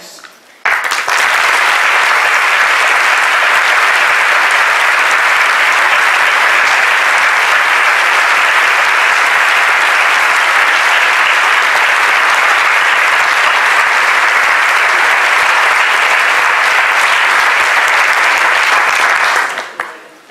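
A large audience applauding steadily, the clapping starting suddenly just under a second in and dying away near the end.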